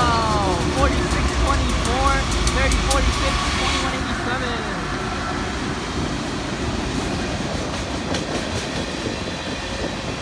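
Diesel locomotives of a freight train passing close by, their engine rumble strongest in the first few seconds with its pitch falling as they go past. This is followed by the lower, steady rumble and clatter of the container cars rolling by.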